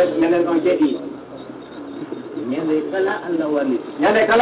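A man speaking, in two stretches with a short pause between them.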